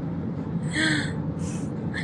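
Steady low car-cabin rumble of engine and road noise, with a woman's short breathy gasp just under a second in and a quick hiss of breath about half a second later.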